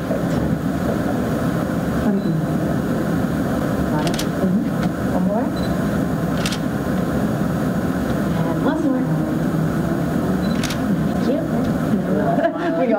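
Indistinct murmur of several people talking at once in a large room, a steady, unbroken chatter with a few faint sharp clicks scattered through it.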